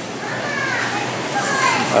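Indoor store hubbub with a child's high-pitched voice calling out a couple of times in the background.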